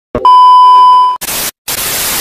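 Television colour-bar test-pattern sound effect: a steady high beep lasting about a second, then a burst of static hiss, a brief break, and the static again.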